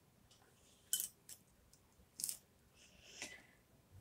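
A few faint, sharp clicks and light taps, about a second and two seconds in, from a watercolour brush being handled and moved onto a plastic paint palette.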